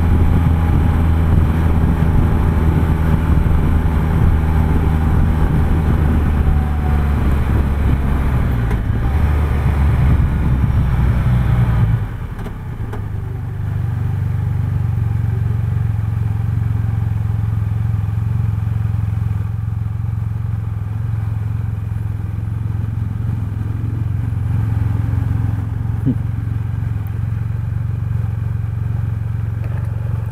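Can-Am Spyder F3's three-cylinder engine running under way, with wind noise. About 12 seconds in the level drops suddenly as the throttle closes, and the engine goes on at a quieter, steady low hum as the trike slows behind traffic.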